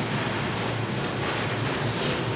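Steady hiss with a low hum underneath: the background noise of the lecture recording, with no one speaking.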